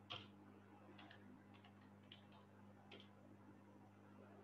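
Near silence over a steady low electrical hum, broken by a few faint, irregularly spaced clicks, the strongest just after the start.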